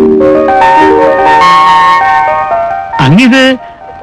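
Film background music: a short run of rising notes, each held so that they pile up into a sustained chord. A man's voice speaks briefly near the end.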